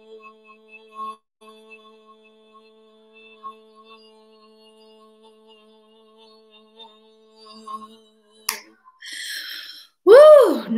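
A woman holding a long, low sung "ho" on one steady pitch, the held last note of a sustained-note voice exercise, heard faintly. The note stops near the end, followed by a sharp click and a brief hiss.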